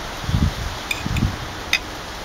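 Outdoor background noise with low rumbles and a few faint light clicks.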